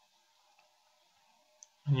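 Near silence with faint room hum, broken by a single soft click at the computer about one and a half seconds in. Speech begins right at the end.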